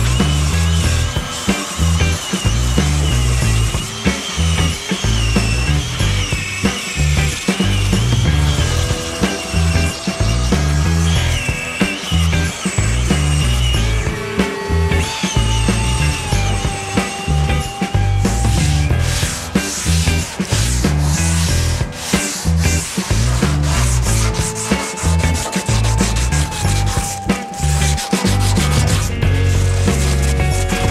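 Electric sanders working over the bare plywood bottom of a canoe hull, a continuous rubbing, scraping noise, mixed with background music with a steady beat.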